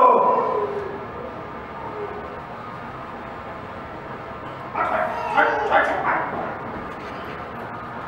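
Short loud shouts of encouragement from people around a barbell squat: one shout falling in pitch at the start, then a run of several quick shouts about five seconds in, as the lifter comes up out of the squat. Room noise fills the gap between them.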